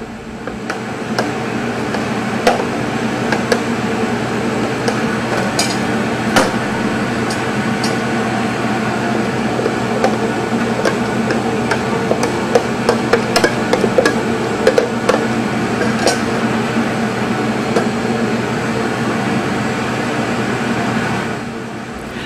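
A metal spoon clicking and scraping against a plastic container and a metal sheet pan while sliced almonds coated in syrup are tossed and spread out: scattered sharp clicks. Under them runs a steady hum that fades in at the start and drops away near the end.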